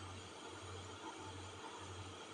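Faint steady background hiss with a low electrical hum underneath: the recording's noise floor between spoken phrases.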